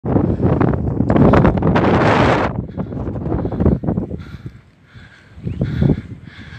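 Wind buffeting the phone's microphone in gusts, loudest over the first two and a half seconds, then easing off and dropping low about four and a half seconds in before gusting again near the end.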